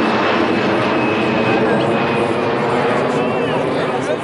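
Jet aircraft passing low overhead: a loud, steady engine noise with a thin high whine that slowly drifts down in pitch, beginning to ease off near the end.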